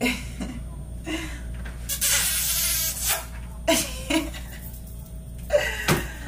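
A woman laughing in short bursts, with a longer breathy stretch about two seconds in, over a steady low hum.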